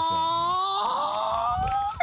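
A person's long drawn-out 'awww', held on one pitch and then rising in pitch in the second half.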